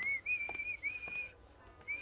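A person whistling: a high, slightly wavering tone held for over a second with short breaks, then one brief note near the end.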